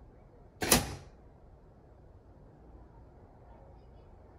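Pneumatic cylinder snapping a plastic blast gate open at full speed: one sharp clack with a short rush of air under a second in, with no flow control valve to slow the stroke.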